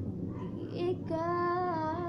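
A woman singing with an acoustic guitar she is playing: a few short sung sounds, then from about a second in one long held note that dips slightly in pitch.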